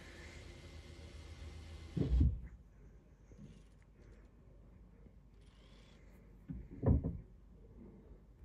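Quiet room with faint hiss that cuts off suddenly about two seconds in, and two short, soft, low thumps, one about two seconds in and one near the end.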